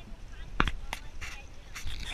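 Two sharp knocks about a third of a second apart, followed by softer scuffing noises.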